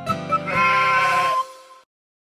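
Children's song backing music playing its last notes, with a sheep's bleat over it from about half a second in; everything fades and stops shortly before the end.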